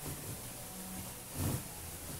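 Low, steady room noise with a brief soft bump about one and a half seconds in.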